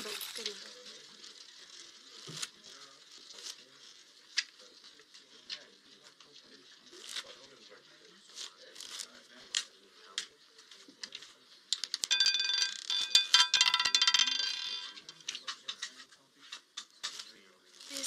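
Roulette ball running round a live casino wheel with scattered light ticks. About twelve seconds in it clatters rapidly for about three seconds as it drops over the pocket frets and settles into a number.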